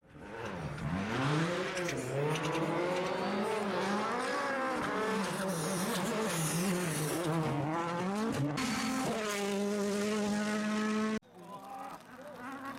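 Rally car engine at full throttle, its pitch rising and falling repeatedly through the gears, then holding one steady note for about two seconds before cutting off suddenly about eleven seconds in.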